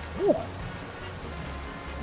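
A man's short 'ooh' as he picks up a hot crawfish, over quiet background music.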